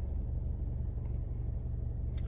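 Steady low rumble of a car idling, heard inside the cabin.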